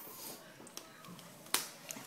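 A single sharp click about one and a half seconds in, against a quiet room.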